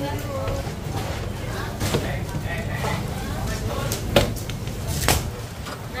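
Indistinct voices talking over steady low background noise, broken by three sharp knocks about two, four and five seconds in; the knock near four seconds is the loudest.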